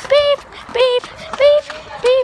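A child's voice saying 'beep' over and over, imitating an electronic tone: three short sung beeps about two-thirds of a second apart.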